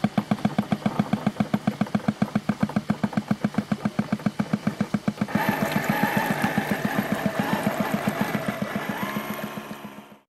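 Model ship's diesel-engine sound chugging steadily at about eight beats a second, from the 1:20 working model of the research vessel Professor Albrecht Penck. About five seconds in, a louder layer with held tones joins over the chugging.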